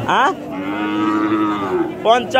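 Cattle mooing: a short call dropping in pitch, then one long held moo of about a second and a half.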